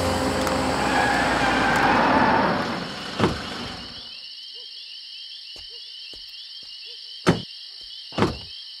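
A low soundtrack drone with a swelling rush fades out over the first four seconds, leaving a night ambience of chirping crickets and small frog croaks. A car door clunks open about three seconds in, and a single sharp knock comes near the end.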